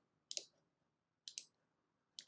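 Two short computer mouse clicks about a second apart.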